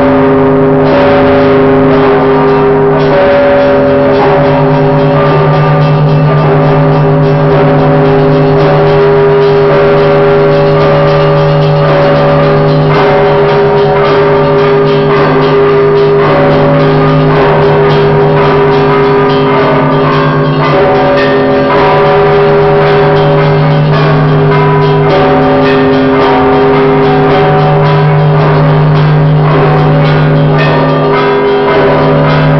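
Russian Orthodox bells of the Danilov Monastery set, rung by hand with clapper ropes: rapid, dense strikes of the small bells over the long, held ringing of the larger bells. It is very loud and close, heard from inside the bell tower.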